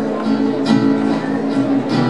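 Live band music: a strummed acoustic guitar keeping a steady rhythm, with other instruments holding sustained notes.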